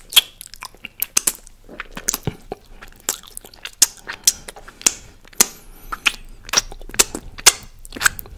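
Close-miked wet mouth sounds: irregular sharp smacks and clicks of chewing and lip-smacking, a few a second, right at a condenser microphone.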